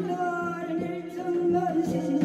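Korean shamanic chant: one voice singing long, wavering notes of the sung narrative, with little drumming underneath.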